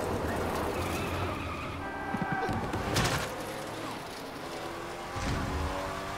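Film sound effects of a race car's tyres skidding and engines running, mixed with a music score, with a sudden sharp hit about three seconds in.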